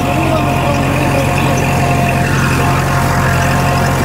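Kubota L5018 tractor's four-cylinder diesel engine running steadily under load as it pulls a disc plough through the field.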